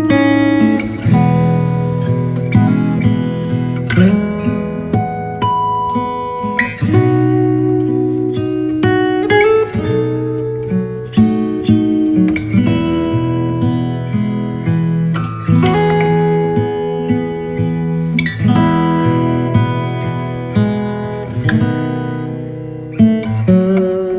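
Background music: an acoustic guitar playing a run of plucked notes that ring on, with some strumming.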